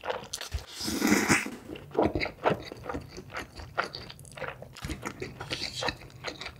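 Close-miked mouth sounds of instant noodles being eaten: a noisy slurp of a mouthful about a second in, then wet chewing with many small sharp smacks and clicks.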